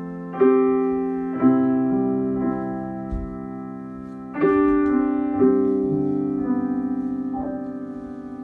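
Solo piano karaoke backing track playing from a television: slow chords struck about once a second, each left to ring and fade, with a longer pause in the middle.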